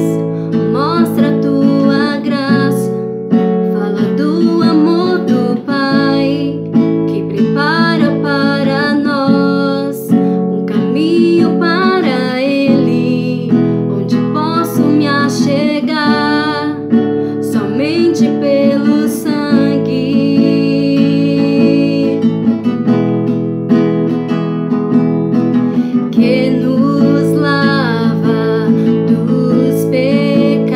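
A woman singing while strumming chords on an acoustic guitar.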